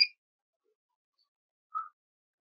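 Two brief high-pitched tones in otherwise dead silence: one at the very start and a shorter, lower one near the end.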